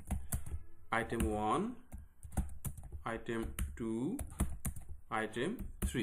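Computer keyboard keys clicking in short runs as text is typed.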